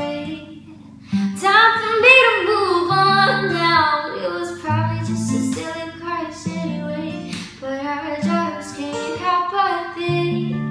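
A young girl's voice singing a pop song while she accompanies herself on acoustic guitar. After a brief quieter moment about a second in, the voice comes in with sliding, ornamented notes over the guitar chords.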